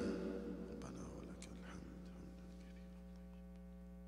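A man's chanting voice dies away in the room's reverberation over the first two seconds, leaving a steady electrical mains hum from the sound system with a few faint clicks.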